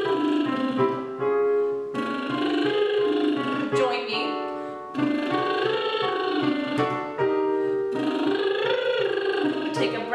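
A woman's voice doing lip trills, lips buzzing as the pitch slides up and back down, as a vocal warm-up. She does three glides of about two seconds each, with chords on a digital piano keyboard played between and under them.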